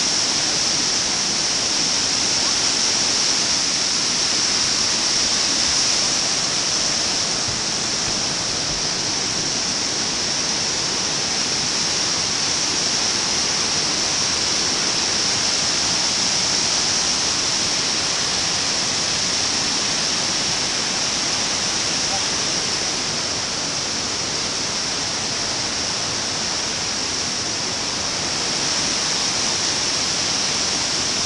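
Whitewater rushing down rocky waterfall cascades, heard up close: a loud, steady roar of falling water.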